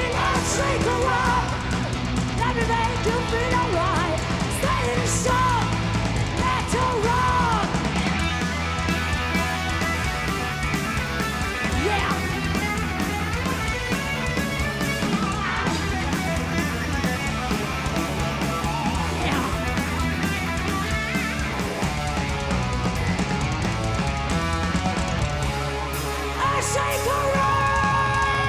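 Live heavy metal band playing loud: distorted electric guitars, bass and drums, with a lead line that bends and wavers in pitch during the first several seconds.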